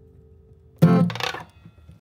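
Acoustic guitar: a chord rings faintly, then a sudden loud strum about a second in and a weaker second stroke just after, closing the song, which fade within half a second.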